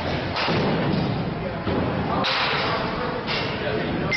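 Baseball bat hitting pitched balls: two sharp impacts about two seconds apart, over a steady background din.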